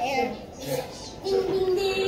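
A child singing: a short falling note at the start, then a long held note through the second half.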